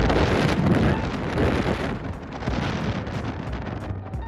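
Wind buffeting the microphone outdoors, a rushing noise that is strongest in the first two seconds and then eases.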